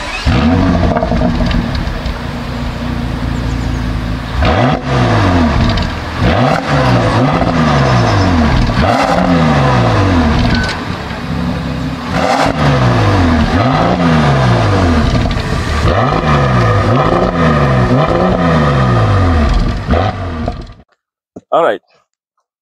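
Bentley Bentayga's 6-litre twin-turbo twelve-cylinder engine being revved again and again, heard at the exhaust tips: each blip rises and falls in pitch, about one a second, in several runs. The sound cuts off near the end.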